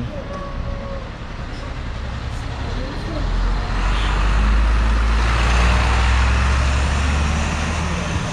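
City bus passing close by: a low engine rumble that builds from about three seconds in, is loudest in the second half and eases off near the end.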